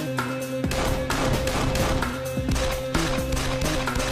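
Several pistol shots in quick succession over dramatic background music with a steady held tone.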